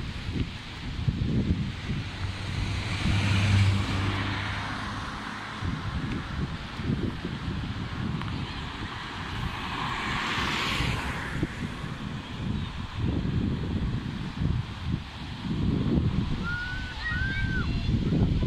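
Wind buffeting the microphone in uneven gusts, with a vehicle passing on the road about ten seconds in. A few short high chirps come near the end.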